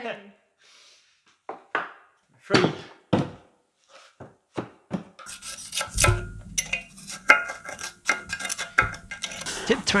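A freshly poured aluminium casting being broken out of its green-sand mould: a few separate sharp knocks, then, from about five seconds in, steady scraping and clattering as the cast plate is dragged free of the sand.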